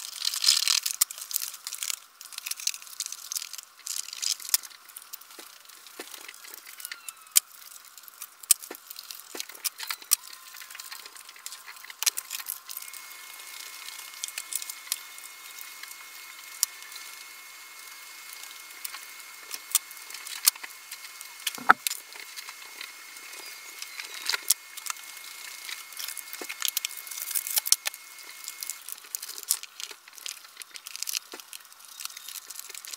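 Shaper sheet paper crinkling and rustling as it is pressed onto a model railway hillside and fixed with a hot glue gun. Many small sharp clicks and taps run through it, with one louder knock a little past two-thirds of the way in.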